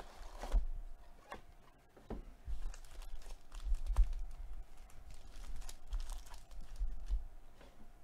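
Foil wrapper of a trading-card pack being torn open and crinkled by hand, with scattered small crackles and low handling bumps.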